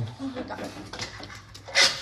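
Tech Deck fingerboard scraping and clicking on a marble tabletop as a child pushes it for a trick, with a sharper, louder scrape near the end.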